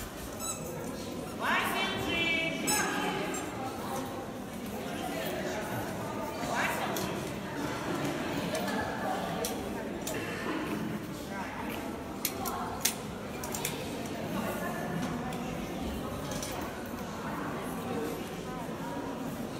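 Indistinct voices murmuring and echoing in a large hall. A dog whines briefly about a second and a half in, and two sharp clicks sound about two-thirds of the way through.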